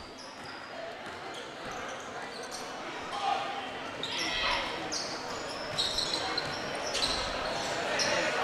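Basketball being dribbled on a hardwood gym floor amid steady crowd chatter and scattered shouts, echoing in a large gymnasium.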